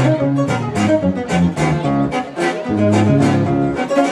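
Live band playing an instrumental passage without singing: guitars over a bass line with a steady beat.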